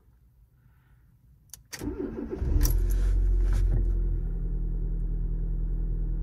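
A car engine, converted to run on LPG, being started: a click about a second and a half in, a short crank, and it catches, running a little higher at first and settling to a steady idle from about four seconds in.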